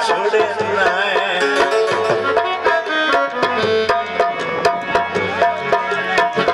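Harmonium playing a melody of held notes over a steady tabla rhythm: an instrumental interlude in a Punjabi folk song.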